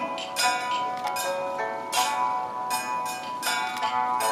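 Taoist ritual music: a held melody with metallic percussion struck every half second to a second, each strike ringing on.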